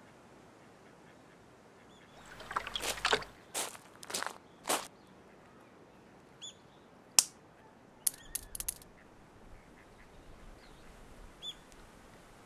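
A duck quacking in short calls: a cluster about two to three seconds in, then two more just after four seconds. Scattered sharp clicks follow later, with a few faint chirps.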